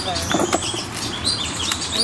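Birds chirping: a quick run of short chirps, some bending up and down in pitch, repeating throughout.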